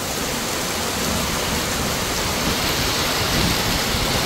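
Heavy rain falling steadily on grass and a waterlogged dirt road, an even hiss.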